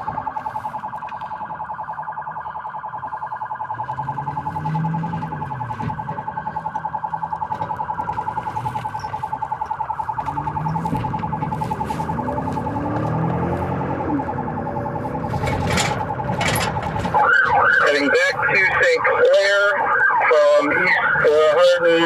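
Police car siren in a rapid warble, heard from inside the pursuing patrol car; it cuts off about seventeen seconds in.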